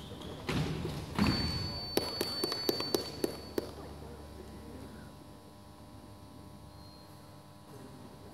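A quick run of sharp knocks and thuds, about eight in under two seconds, echoing in a large hall over a steady high-pitched beep that stops about the same time as the knocks.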